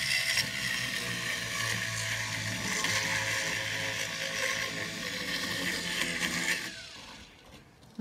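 Flex-shaft rotary tool with a ball burr running as it grinds a shallow outline into a compressed charcoal block: a steady motor hum and whine with a gritty scraping. Near the end the motor winds down with a falling whine and stops.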